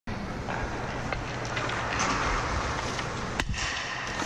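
Ice-rink practice sounds: a steady low hum and the hiss of skates on ice, broken by several sharp cracks of pucks and sticks, the loudest a little before the end. Near the end a goalie's skates and pads scrape across the ice as he pushes from post to post.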